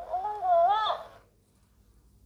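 Dancing cactus toy repeating back the words just spoken to it in a sped-up, squeaky high-pitched voice, about a second long.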